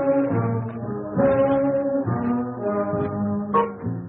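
A 1940s swing big band playing an instrumental passage, with the horns holding chords that change about once a second.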